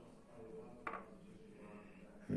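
Near-quiet workshop room tone with one light click about a second in, from a thin steel rod being worked in the bore of a small brass bushing.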